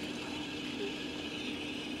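Quiet room tone with a faint steady hum; no distinct event.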